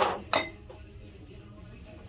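Swing-top glass bottles clinking against each other on a shelf: a sharp clink and a second, slightly softer one about a third of a second later, as one bottle is handled among the others.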